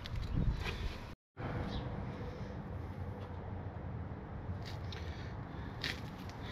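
Quiet outdoor background noise, a steady low haze with a few faint clicks, broken by a brief gap of total silence about a second in.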